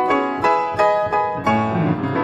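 Grand piano played solo: after a brief hush it comes in loudly with dense chords and quick, struck notes, and low bass notes join in about a second and a half in.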